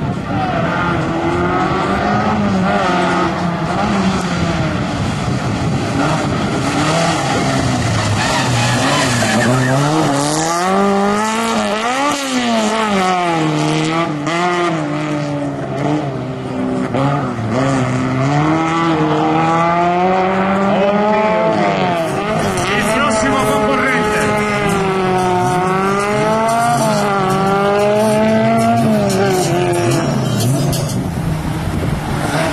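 Autobianchi A112's small four-cylinder engine revving hard through a tight cone slalom, its pitch climbing and dropping again and again as the driver accelerates, lifts off and shifts gear, with tyre squeal in the turns.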